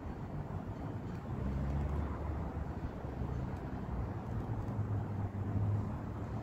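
Low engine rumble with a faint hum, swelling about a second and a half in and again near the end.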